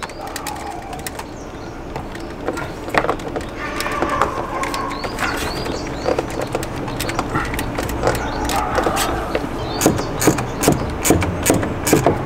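Clicks and knocks of a cone air filter and its jubilee clip being handled and pushed onto a car's intake pipe, growing busier toward the end, with birds calling in the background.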